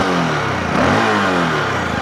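A VOGE 650 DSX's 650 cc single-cylinder engine running with the bike parked, its revs sinking, picking up about a second in, and falling away again. It has the deep, booming sound typical of a big single, like the BMW 650 single it is built from.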